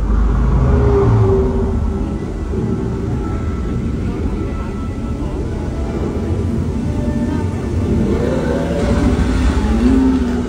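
Steady low rumble aboard a theme-park ride boat moving along its water channel, with faint pitched tones over it and a swell near the end.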